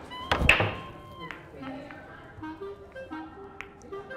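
Pool break shot: the cue ball cracks into the racked balls with one loud, sharp impact about half a second in, followed by a few fainter clicks of balls knocking together, over background music.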